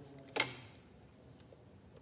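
Drawing instruments handled on a drawing board: one sharp click about half a second in, then a few faint taps.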